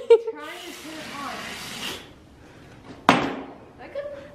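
Garden hose spray nozzle hissing for about two seconds, then a single sharp knock.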